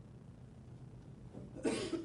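A single short cough near the end, over quiet room tone with a faint low hum.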